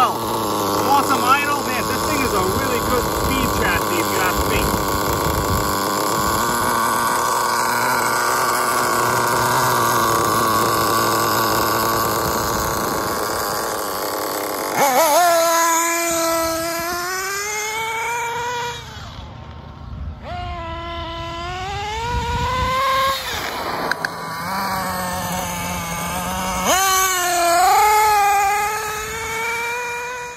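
Nitro engine of a Losi 8ight 1/8-scale RC truggy running. For the first half it holds a dense, rough buzz. From about halfway it revs up and down repeatedly in rising and falling whines as the truck is driven.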